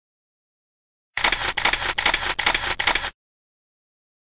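A rapid run of sharp clicks, about four a second, starting about a second in and stopping abruptly after about two seconds.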